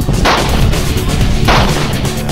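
Two gunshots about a second and a quarter apart, each a sharp crack that dies away quickly, over loud background music with a steady low beat.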